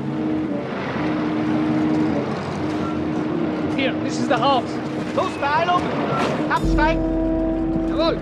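Car engines running as vehicles drive up and stop, joined about two-thirds of the way in by the heavier, deeper rumble of an army truck's engine.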